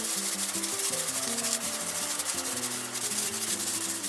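Thin plastic bag crinkling as seasoning is rubbed into food inside it by hand, a continuous scrunching. Soft background music plays a slow run of low notes underneath.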